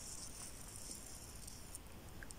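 Beading thread being drawn through a bead and the brooch's edge: a faint, steady, high hiss that stops shortly before the end.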